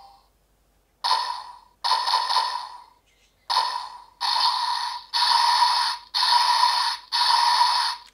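DX Venomix Shooter toy gun playing its charge-attack shot sound effects from its small built-in speaker. About a second in, a series of hissy electronic blaster bursts begins: the first two fade away, and then four even bursts come about one a second, each stopping sharply.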